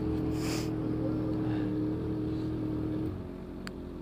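Yamaha XJ6 inline-four on an aftermarket 4-into-1 straight-pipe exhaust idling with a steady hum, then switched off about three seconds in, the hum stopping abruptly.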